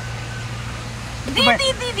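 A steady low hum under a faint background hiss, then a voice speaking briefly about a second and a half in.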